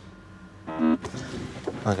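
Quiet truck cab with the engine off and no starter heard. A brief voiced sound comes about a second in, and speech begins near the end.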